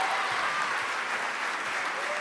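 Audience applauding, a dense steady clatter of many hands that slowly eases off.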